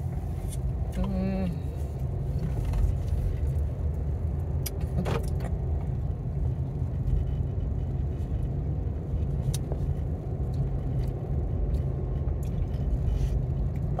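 Steady low rumble of a car heard from inside its cabin, with a few faint clicks.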